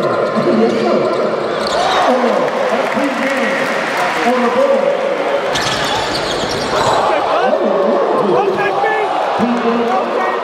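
Live basketball play on a hardwood court: a ball being dribbled and bounced, with players calling out and short squeaks from sneakers.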